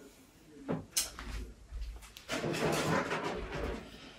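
A thin clear plastic seed-tray dome lid being picked up and handled: a sharp click about a second in, then a couple of seconds of crinkling and scraping plastic.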